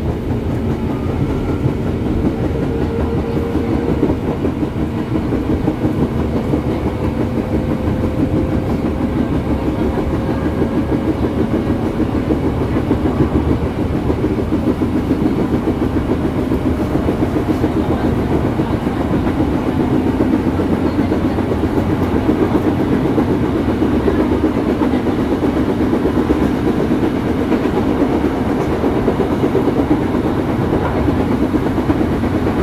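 Electric commuter train heard from inside the car while running between stations: a steady rumble of wheels on the rails, with a faint motor whine slowly rising in pitch over the first dozen seconds as the train gathers speed.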